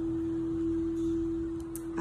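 Background music: a single steady drone tone held at one unchanging pitch, like a sustained tuning-fork or singing-bowl tone.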